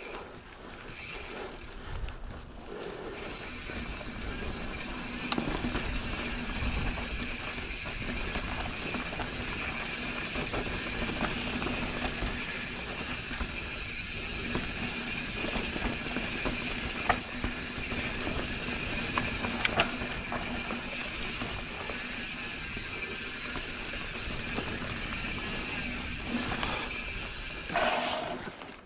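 Mountain bike's rear freehub buzzing steadily as the rider coasts downhill, setting in a few seconds in, over the rumble of knobby tyres on dirt. A few sharp knocks from the bike going over small roots and stones.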